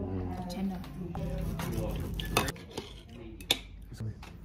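Steel knife and fork scraping and clinking on a ceramic plate while cutting steak, with two sharp clinks in the second half.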